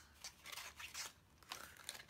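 Faint crinkles and light clicks of thin metal cutting dies being handled and lifted off their clear plastic packaging sheet.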